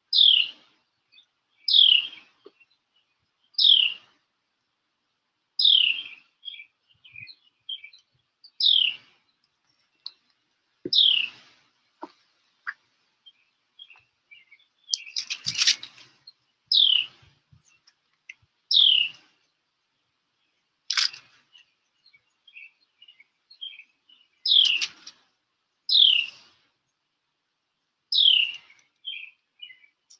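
A songbird calling: one clear note sliding downward, repeated about every two seconds, with softer, quicker chirps in between. A short burst of noise about halfway through and a sharp click a few seconds later.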